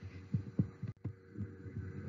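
Soft, low, uneven thumps, about three or four a second, over a faint steady hum.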